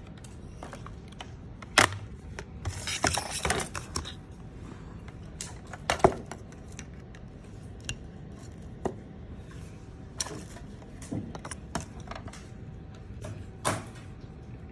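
Irregular sharp clicks, knocks and clatter of hard objects being handled on a repair workbench. The loudest knocks come about two and six seconds in, with a quick run of clicks around three seconds in.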